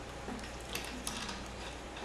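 Faint scattered ticks and rustling of 17-gauge copper wire being wrapped by hand around a ferrite rod, over a steady low hum.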